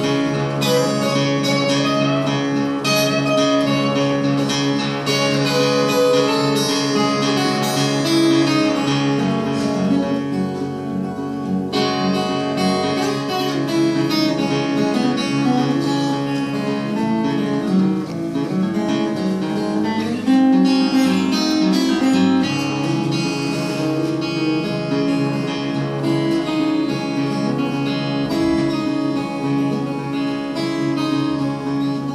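Acoustic guitar played solo, an instrumental break between sung verses: picked melody lines moving over held chords, with no singing.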